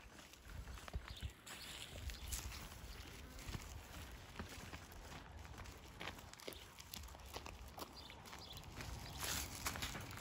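Faint outdoor ambience: an uneven low rumble with scattered small clicks and taps, and a short brighter rustle near the end.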